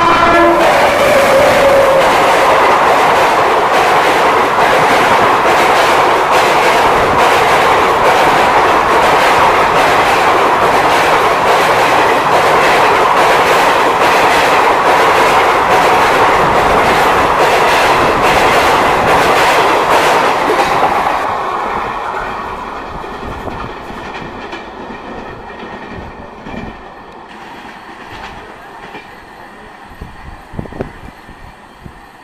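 Express passenger train hauled by a WAP7 electric locomotive passing through a station at speed. The locomotive's horn cuts off about half a second in. Then the coaches' wheels run loud and close, clattering rhythmically over the rail joints for about twenty seconds, before the sound fades away as the last coach passes.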